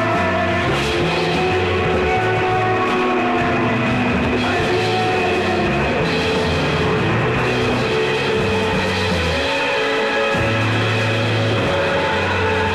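A rock band playing live, with electric guitars and drums.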